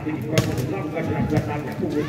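A volleyball jump serve: one sharp smack of the hand on the ball about half a second in, over continuous voices of onlookers.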